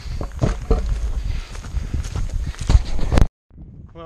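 Footsteps crunching on a dirt and gravel track, irregular knocks over a steady rumble of wind on the camera microphone. The sound cuts off abruptly about three seconds in.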